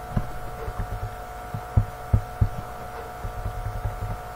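A steady electrical hum made of a few high tones, with irregular dull low thumps over it; the strongest thumps come in a cluster about two seconds in.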